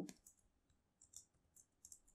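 A few faint computer keyboard keystrokes clicking in the second half, near silence between them.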